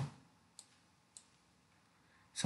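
Two faint, sharp clicks of a computer mouse, about half a second apart, in near silence.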